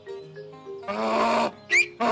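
Cartoon donkey braying in distress, two harsh cries starting about a second in with a short high rising squeak between them, over soft background music: the donkey is choking.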